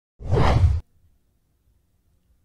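A single short whoosh sound effect for a channel logo sting, with a heavy low end, lasting just over half a second.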